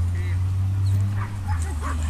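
A dog yipping and barking in a few short calls, most of them in the second second, over a steady low hum.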